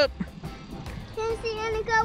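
A young child's drawn-out voice: one held note over low background noise, rising in pitch near the end.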